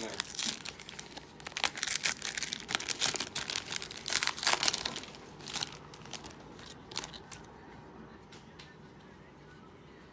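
Trading-card pack wrappers being torn open and crinkled by hand, in dense crackles that thin to a few scattered clicks after about five seconds.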